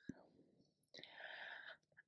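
Near silence, with a faint breath drawn in about a second in, lasting under a second, and a tiny click at the very start.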